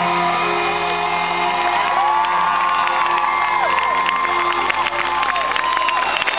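Live concert audience cheering and whooping over the band's final held chord, heard through a camcorder's narrow, loud recording. Clapping starts about halfway through and grows.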